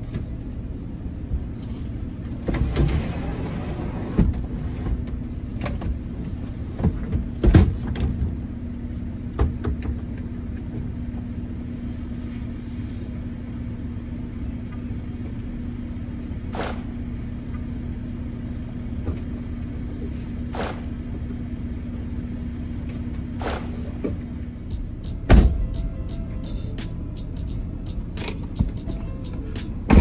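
Inside a parked vehicle's cab: a steady low engine hum with scattered clicks and knocks. Near the end comes a loud thump and a run of clicks as a car door opens and the driver gets back in.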